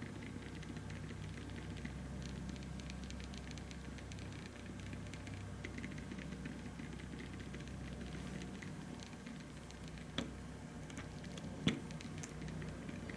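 12 V stepper motor driven by an Adafruit Motor Shield, stepping through its test routine: a faint, rapid run of ticks over a low steady hum. A couple of sharper clicks come near the end.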